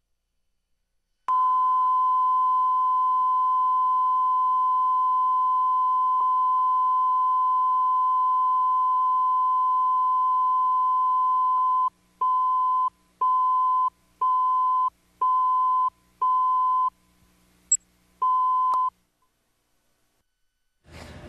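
Steady line-up test tone of a network feed countdown slate, held for about ten seconds, then broken into short beeps a second apart counting down the last seconds, with one beat missing before a final beep. A faint hum runs under the tone.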